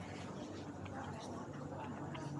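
Indistinct background chatter of people talking, not close to the microphone, over a low steady hum, with a few faint clicks.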